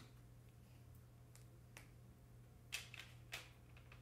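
Near silence over a low steady hum, broken by a few faint, sharp clicks, the two loudest close together near the end.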